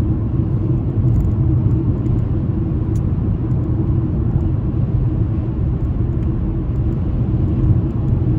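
Steady low rumble of a car driving at motorway speed, heard from inside the cabin: engine and tyre road noise.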